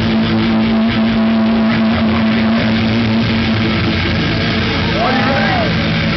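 Loud distorted electric guitars and bass holding one droning chord with feedback, with arching pitch bends about five seconds in.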